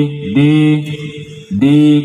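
A man's voice through a PA system during a vocal sound check, calling a drawn-out 'dee' into the microphone twice, each held about half a second with a short rise in pitch at the start.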